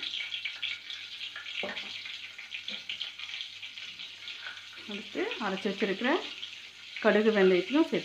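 Hot oil sizzling with a fine, steady crackle in a stainless steel pot as curry leaves and spice powder fry in it: the tempering for a green mango pickle.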